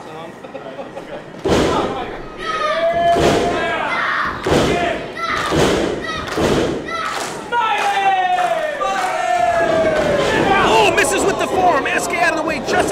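A series of heavy thuds, about one a second, with shouting voices between them.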